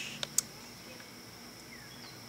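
Quiet outdoor background with a faint, steady high-pitched insect drone, and two small clicks shortly after the start.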